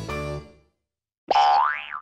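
Upbeat children's background music fades out about half a second in. After a short silence, a loud cartoon sound effect follows, one tone that glides up in pitch and then drops back.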